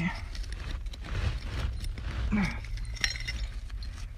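Old glass soda bottle being worked by a gloved hand in packed dirt and rock, making scattered scrapes and light clinks of glass against stone and grit. A steady low rumble runs underneath.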